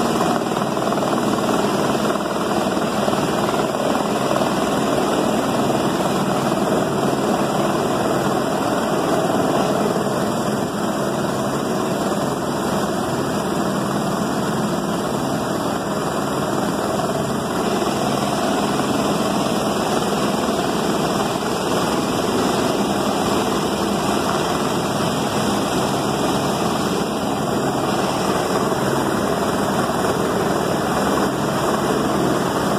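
Helicopter hovering, its rotor and engine running steadily, over the continuous rush of floodwater pouring through a rocky canyon.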